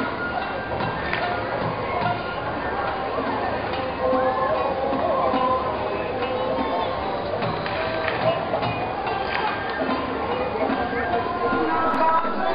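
Voices and music together, dense and steady, with scattered sharp knocks through it.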